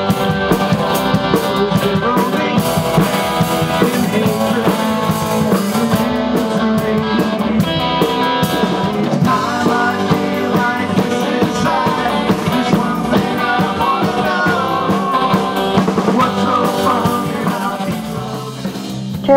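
Live rock band music: electric guitars playing over a drum kit.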